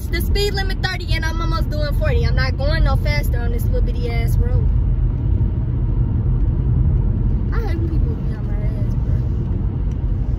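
Steady low rumble of a car heard from inside the cabin. Over it, a person's voice makes pitched sounds without clear words through the first four seconds and again briefly near eight seconds.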